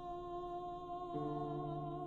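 A mezzo-soprano holds one long sung note with vibrato over piano accompaniment, and a low piano chord comes in about a second in.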